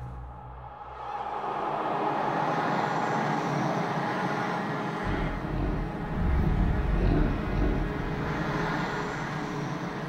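Atmospheric soundtrack drone: a rushing, wind-like swell that builds over the first two seconds and holds, with a few faint sustained tones. A deep rumble joins abruptly about halfway through and fades again toward the end.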